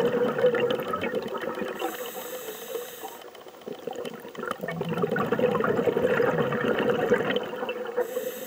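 Underwater sound of a scuba diver's breathing: exhaled bubbles gurgling and crackling, easing off a couple of seconds in with a faint hiss of inhalation, then crackling again.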